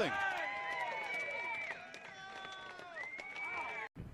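Scattered cheering and shouting from a small ballpark crowd celebrating a home run, several voices held in long calls at once, fading away. It cuts off suddenly near the end.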